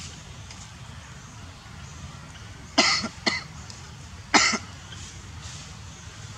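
Three short, loud coughs near the middle, the second close after the first, over a steady low outdoor background hum.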